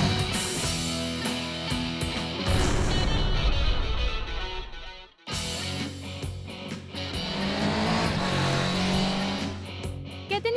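Rock jingle music with electric guitar. A louder, noisier stretch builds to a brief drop-out about halfway through, and a new music sting starts straight after.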